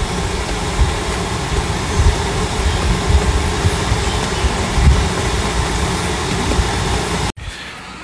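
Wind buffeting a phone's microphone outdoors: a steady rushing noise with a low rumble that swells and dips, cutting off suddenly about seven seconds in.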